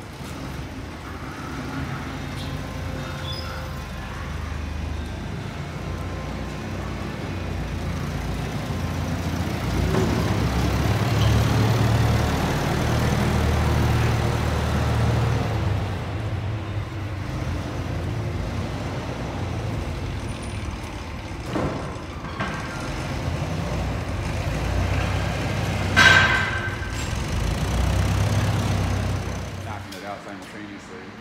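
Propane-fuelled Hyster forklift engine running with a steady low hum that swells for a few seconds midway, with two knocks later on, the louder one near the end.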